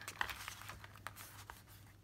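Paper and card being handled: faint rustling with a few soft ticks.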